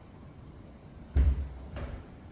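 Footsteps: a heavy thud about a second in, then a lighter step shortly before the end.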